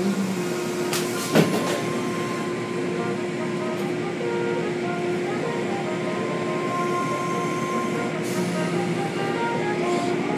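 Automatic tunnel car wash heard from inside the car: water spraying and cloth strips and brushes washing over the body, over a steady machine hum, with a couple of sharp knocks about a second in.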